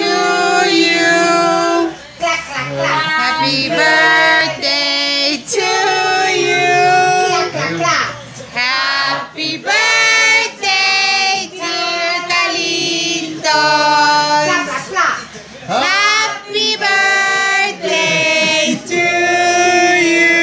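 A group of voices, children's and women's among them, singing a birthday song together.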